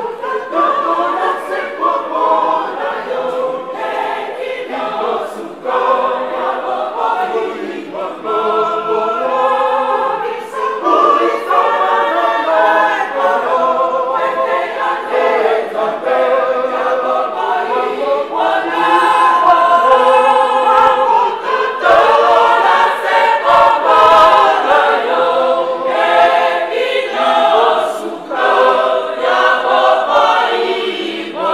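A large women's choir singing together in phrases, loud and steady, with short breaths between lines.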